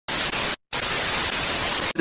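White-noise static sound effect: a steady hiss, broken by a short silent gap about half a second in, cutting off suddenly near the end.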